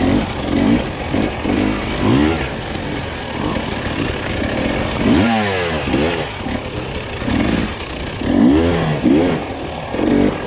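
Dirt bike engine revving up and down repeatedly under the rider's throttle, the pitch rising and falling about once a second, with one longer drop in revs about halfway through.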